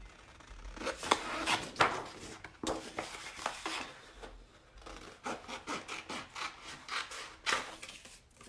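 Scissors cutting a sheet of patterned scrapbook paper: a run of irregular short snips, with the paper rustling as it is turned and handled.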